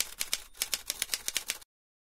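Typewriter keystroke sound effect: a quick, even run of key clicks, about six to seven a second, in time with letters being typed onto the screen, cutting off abruptly shortly before the end.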